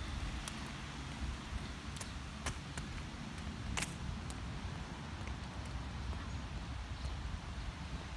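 Outdoor background noise picked up by a phone while walking: a steady low rumble with a light hiss, broken by a few sharp clicks.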